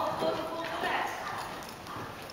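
A horse's hoofbeats on the sand footing of an indoor riding arena as it moves past at a trot, with people talking over it.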